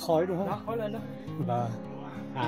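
A voice talking over background music with acoustic guitar.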